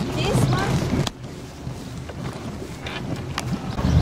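Motorboat running, with wind on the microphone and a brief voice. The sound cuts off abruptly about a second in to a quieter, steady hiss of open air.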